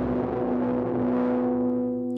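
Vienna Smart Spheres 'Punchbowl' bass preset, four bass layers stacked, ringing on after a struck note: a steady pitched tone whose deep rumble and bright top fade away.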